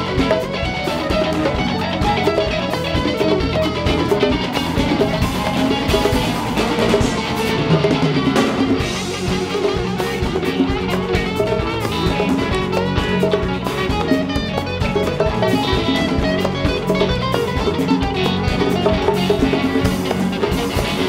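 A live band playing electric guitar over bass and a drum kit, mixed straight from the soundboard.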